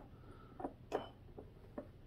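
Four or so faint, short clicks and scrapes of a slotted flathead screwdriver tip working a small terminal screw on a lamp socket's metal bracket, turned at an angle.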